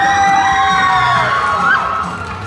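A high sung note held for over a second in the middle of a choir song, with audience whoops and cheering over it.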